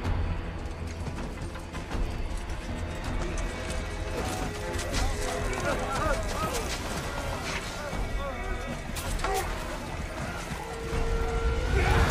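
Movie battle sound mix: a heavy low rumble of a crowd of soldiers pushing, with men yelling and scattered sharp impacts, over music. Near the end a long held note comes in and the sound swells.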